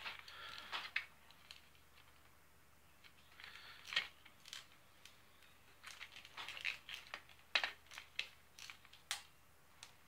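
Faint, scattered plastic clicks and knocks of toy lightsaber parts being handled and twisted off, quiet for a couple of seconds early on, then a run of sharp clicks over the last few seconds.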